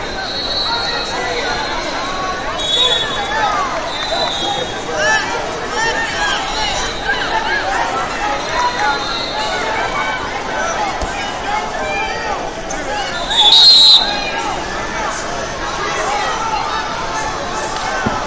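Crowd chatter and shouts filling a large gym during wrestling, with a few short high whistle tones in the first few seconds and one loud, short referee's whistle blast about three quarters of the way through, the loudest sound.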